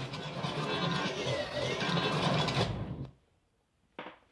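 A sound effect under a production-company logo intro: a steady mechanical whirring and rattling, with a faint whistle that rises and falls in the middle, cutting off suddenly about three seconds in.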